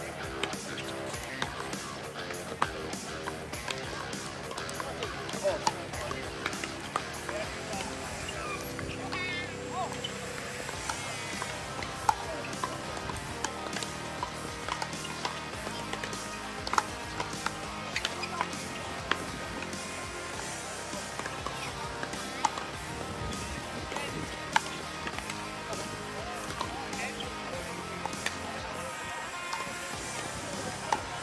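Pickleball paddles striking a hard plastic ball: sharp pops at irregular intervals through the rallies, a dozen or so in all, over background music.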